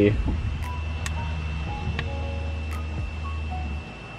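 Buttons on a GoHawk ATN4 Bluetooth speaker's control unit being pressed, a few soft clicks over a steady low hum and a faint high whine. The hum cuts out briefly near the end.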